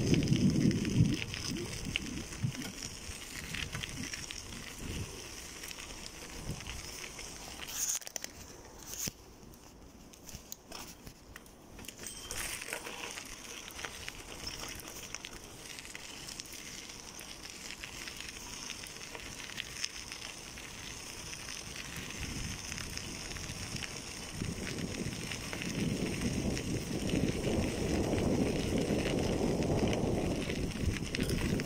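Bicycle tyres rolling over a gravel path, a continuous crackling crunch of loose stones that dips quieter for a few seconds about a third of the way through. A low rumble swells at the start and again in the last few seconds.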